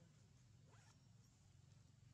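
Near silence: a faint steady low hum, with one brief faint scrape a little under a second in.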